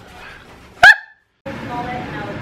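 A single short, sharp dog bark about a second in.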